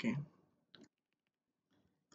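A spoken 'okay', then two short clicks, the second fainter.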